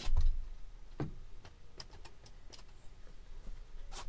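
A dull thud right at the start, then scattered light ticks and taps as someone climbs into a parked van and moves about inside it.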